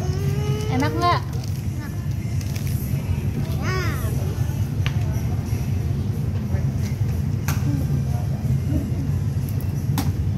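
A steady low rumble of background noise, with a child's short high-pitched voice sounds, wordless and gliding in pitch, near the start and again about four seconds in.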